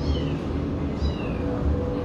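Two faint, short, falling high-pitched animal calls about a second apart, over a steady low hum.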